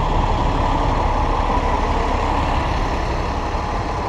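Steady city street traffic with a transit bus's engine running close by in the next lane.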